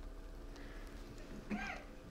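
Quiet room tone during a pause in a talk. About one and a half seconds in comes a brief, faint, wordless vocal sound whose pitch bends up and down.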